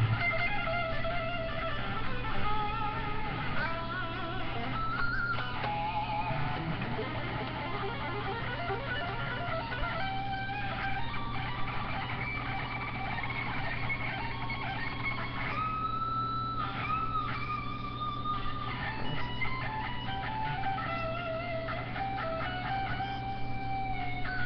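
Electric guitar played at a moderate level: single picked notes and short melodic riffs, some notes held with a wavering pitch, over a steady low hum.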